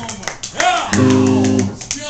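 Amplified electric guitar sounding one held note or chord for just under a second, starting about a second in, over voices in the room.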